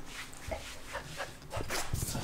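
A dog making a few short sounds.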